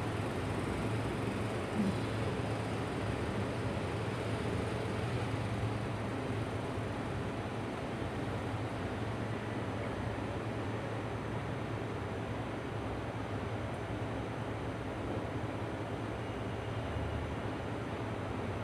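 Steady urban background noise: a low hum under an even hiss, with no distinct knocks or clanks.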